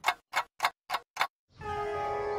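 Five quick, evenly spaced ticks, about three and a half a second, in a cartoon ticking sound effect. After a short silence, a held musical chord comes in about one and a half seconds in.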